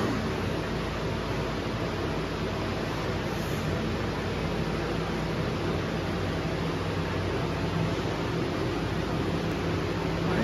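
Steady fan noise, an even hiss with a low hum underneath, with no knocks or clanks.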